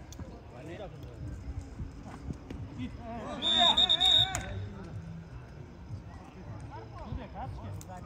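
Men's voices calling out across a small-sided football game, with a short, high whistle about three and a half seconds in, sounding together with a shout.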